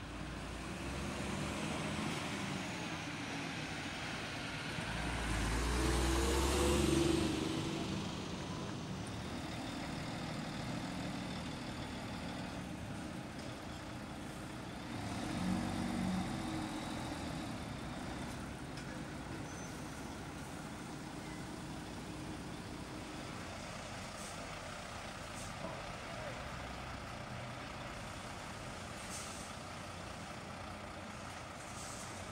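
Heavy lorries' diesel engines running as they pull slowly past. The loudest pass swells about five to eight seconds in, with a spreading hiss of air, and a second smaller swell comes about fifteen seconds in.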